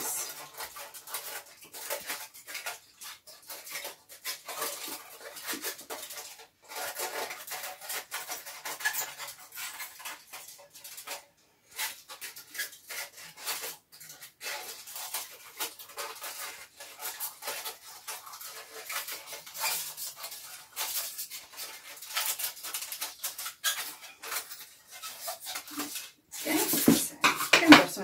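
Kitchen foil crinkling and rustling in the hands as the excess around a lid is trimmed and worked, a dense, irregular crackle that keeps going. It gets louder about a second before the end.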